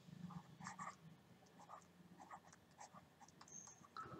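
Faint scratching of a stylus on a pen tablet as a word is handwritten, in short separate strokes over a faint low hum.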